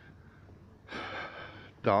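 A man draws one audible breath in, about a second long, in a pause between phrases, and starts speaking again near the end.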